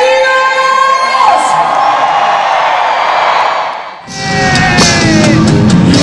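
Live pop concert recorded from the crowd: singing with crowd cheering and whoops. About four seconds in, an abrupt cut brings in full band music with drums and bass.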